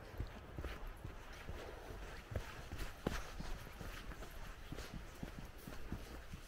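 Footsteps on a muddy dirt path: a run of soft, irregular steps, faint and close to the microphone.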